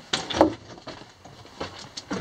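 Footsteps on loose rock rubble in a mine passage: a couple of short crunches near the start, then faint scuffs.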